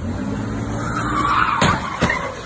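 An SUV's engine revving hard as its tyres squeal, pulling away fast, with one sharp bang about three-quarters of the way through.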